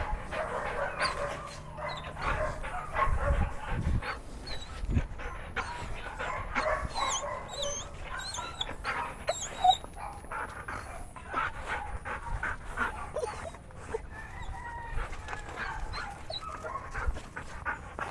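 Belgian Malinois whining and panting quietly as it walks at heel.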